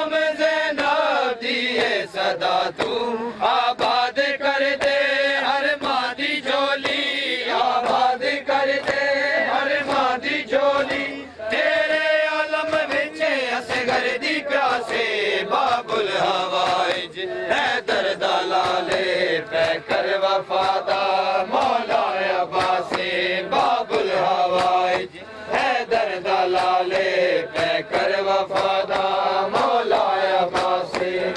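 A crowd of men chanting a noha in unison, long held lines of a mourning lament, with many sharp slaps of hands beating on chests (matam) throughout.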